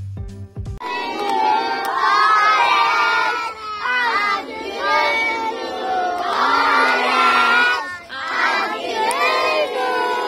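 A group of young schoolchildren singing loudly together, starting about a second in, in sustained phrases with short breaks: a class greeting a classmate on his birthday.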